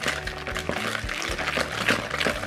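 Hand wire whisk beating softened butter and sugar in a bowl: quick, repeated wet scraping strokes as the mixture is creamed.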